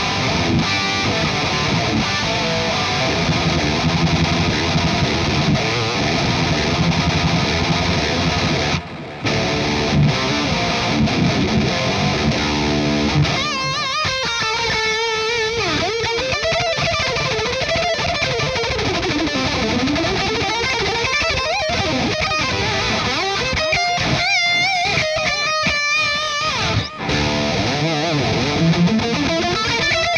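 Distorted electric guitar: a 2019 Jackson Juggernaut Pro on its EMG Het Set bridge pickup, boosted by a KHDK Ghoul Screamer overdrive into a Marshall Origin 50 head, with delay. It plays dense low riffing with a brief break about nine seconds in, then, from about halfway, a lead line of single high notes with bends and vibrato.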